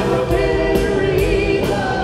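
Live rock band playing, with voices holding a sung note over drums, cymbals and guitar; a new vocal note comes in near the end.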